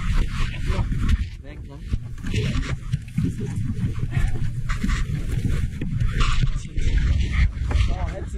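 Heavy, panicked breathing and muffled voice sounds close to the microphone, with clothing and rope rubbing against it, as a shaken parasailer struggles for breath after being pulled from the sea.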